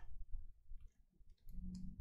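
Faint clicks and plastic rustles of a trading card being slid into a clear soft plastic sleeve, its edge catching on the sleeve.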